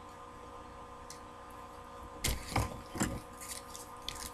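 Faint steady hum, then from about halfway a few short crinkling rustles of a foil trading-card pack being handled.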